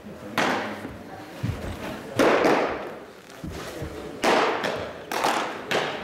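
A series of sharp pops from pitched baseballs smacking into catchers' mitts, each echoing in a large hall, the loudest about two seconds in.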